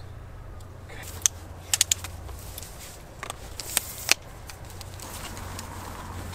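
Sharp clicks and knocks of camera gear being handled, from a Mamiya RB67 medium-format camera and a tripod being set up: one click about a second in, a quick run of three just under two seconds in, and a few more between three and four seconds in.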